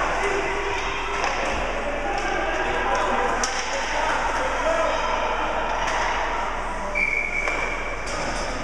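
Indoor ice rink during a youth hockey game: spectators talking indistinctly, with scattered knocks of sticks and puck. A short, steady high whistle tone sounds near the end.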